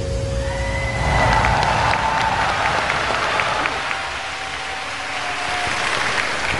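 Large audience applauding in a big hall, with the stage music fading out in the first second.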